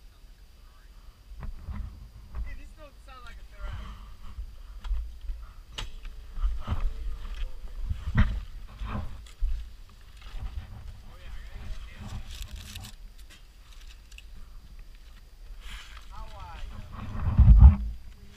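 Gusty wind buffeting the helmet camera's microphone, an uneven low rumble that swells and drops, with a few knocks and faint voices in the background. No engine is heard running.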